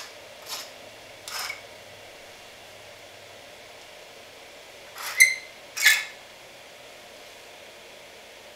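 Light bulbs being screwed into their sockets: a few short scrapes, with the loudest pair about five and six seconds in, one of them with a brief ringing tone.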